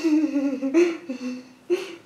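A young woman whimpering and humming in fright, one drawn-out wavering whine broken by sharp breaths about a second in and near the end.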